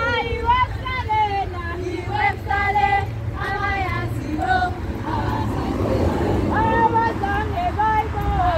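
Young women's voices singing together as they march, held sung notes rising and falling, over a steady low rumble.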